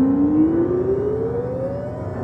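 Ondes Martenot playing one smooth, slow upward glide of more than an octave, over other sustained notes held beneath it.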